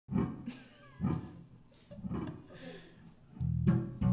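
Acoustic guitar opening a song: chords struck about once a second and left to ring, with a louder, fuller strum near the end.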